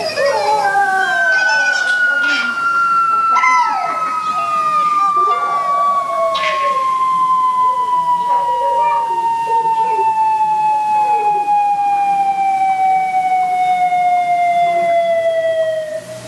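One long whistle-like tone that glides slowly and evenly down in pitch for about fifteen seconds, a falling comic sound effect, with people's voices shouting and cheering over it.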